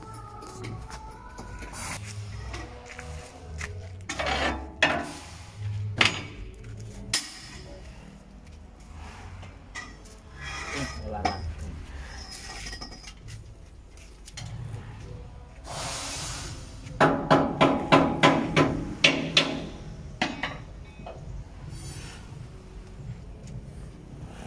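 Metal hand tools clinking, scraping and knocking during a wheel-and-tyre change on a vibratory roller. A short hiss comes about two-thirds of the way in, followed by a quick run of about ten ringing strikes on metal.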